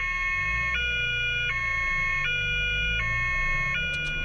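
German police car's two-tone siren (Martinshorn) sounding on an emergency run, switching between a high and a low note about every three-quarters of a second, over a low engine and road rumble.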